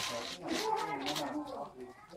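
A young child's high voice making wordless sounds, with crinkling of wrapping paper at the start and again about a second in.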